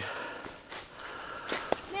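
Footsteps through dry leaf litter and brush on a forest floor, with a few sharp clicks of twigs or handling.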